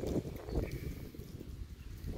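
Footsteps of someone walking while filming, heard as irregular low thumps with some rumbling handling noise on the phone's microphone.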